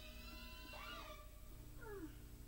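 A cat meowing faintly twice: the first cry rises and falls, the second falls, over faint sustained music.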